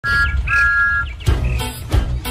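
A steam locomotive whistle sounds twice, a short peep and then a longer one. Upbeat children's theme music with a steady beat starts about a second and a quarter in.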